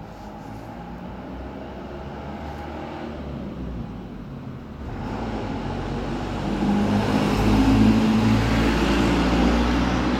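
Low rumble of a motor vehicle's engine, growing louder from about halfway through.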